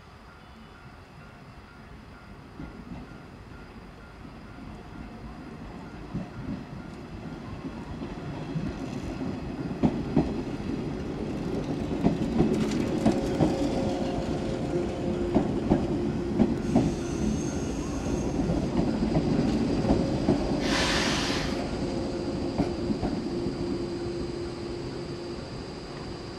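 A JR 107 series electric multiple unit approaching and rolling past close by, growing steadily louder, with sharp wheel clicks over rail joints as it passes and then fading. A short hiss of air comes near the end.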